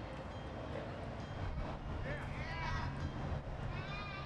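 Steady low background hum, with a high-pitched voice calling out a couple of times in the second half.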